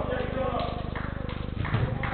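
Players' indistinct shouts over a steady electrical buzz, heard through a CCTV camera's low-fidelity microphone, with a thud near the end as a football is kicked.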